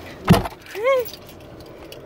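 A car door shuts once with a sharp thump near the start, followed about a second in by a woman's short laugh.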